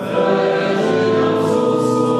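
Choral sacred music: a choir singing long held chords, moving to a new chord right at the start.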